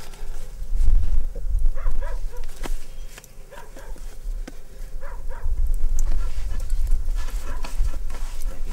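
A few short animal calls over a steady low rumble.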